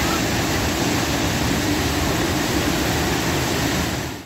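Swollen floodwater pouring over a wide weir and churning white into the rocks below: a steady, loud rush of water.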